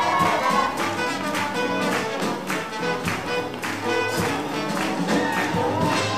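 A live swing jazz band playing, horns over a steady beat.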